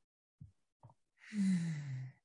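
A woman's long breathy sigh, falling in pitch, starting a little past halfway through, a thinking sigh before she answers a question. A couple of faint mouth clicks come before it.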